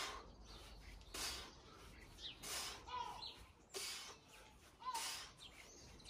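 Short, hissy exhaled breaths in a steady rhythm, one about every second and a quarter, each forced out on a kettlebell swing. Small birds chirp faintly between them.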